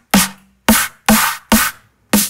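Dubstep snare drum samples made with Sonic Academy's Kick 2, auditioned one after another. Four sharp snare hits about half a second apart, each a crack with a short low tone under it and a bright hissing tail that dies away within a few tenths of a second.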